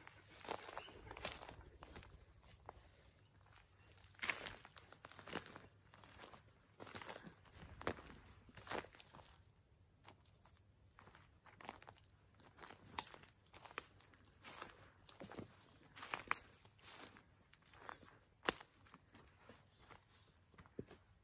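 Footsteps walking over a dry forest floor: faint, irregular crunches and twig snaps, roughly one a second.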